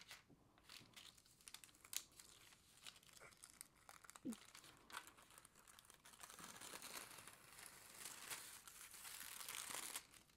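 Faint crinkling of a thin holographic foil transfer sheet being handled and peeled off a toner-printed card front after heat foiling in a laminator. There are a few light ticks in the first half, then a steadier crinkle over the last few seconds as the foil comes away.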